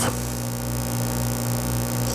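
Steady electrical hum, a low buzz with a strong, unchanging tone near 120 Hz and another near 240 Hz.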